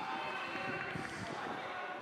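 Football crowd noise from the stands: many voices shouting at once, with a few dull thuds.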